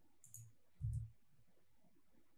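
Two quick, light clicks from a computer keyboard and mouse in use at a desk, followed just before a second in by a single dull thump.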